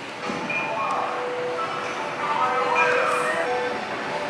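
Gym background sound: indistinct voices and music playing over the room's sound system, with a held tone running through it.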